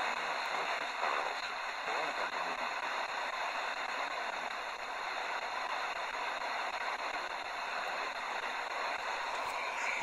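FM radio hiss from a Tecsun PL-310 portable receiver tuned in the OIRT band, with a weak, fading sporadic-E broadcast barely audible through it. The signal is at the edge of reception and the steady noise dominates.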